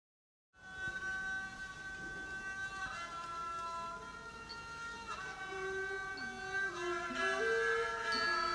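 A Thai classical ensemble starts playing about half a second in. The music is long held notes that step to a new pitch every second or two, getting somewhat louder toward the end.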